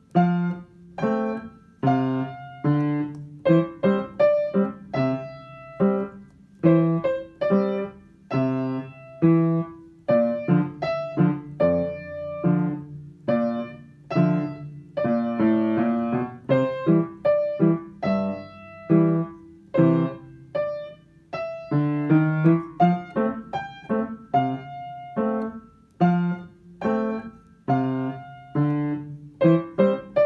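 Piano playing a simple tune in a steady run of separate notes, a melody over lower accompanying notes.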